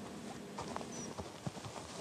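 Quiet background with a few faint, irregular soft knocks.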